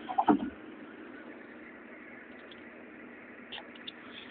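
Steady running and road noise of a Suzuki Alto on the move. Near the start there is a brief burst of loud knocks, and a few faint clicks come near the end.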